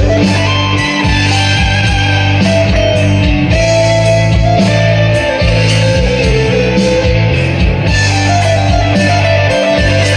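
Improvised rock lead on an electric guitar over a backing track with bass and drums, with several notes sliding down in pitch.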